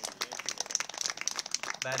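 Scattered applause from a small crowd of spectators: quick, uneven, close-by handclaps right after a player is announced, dying away near the end as the announcer's voice comes back over the PA.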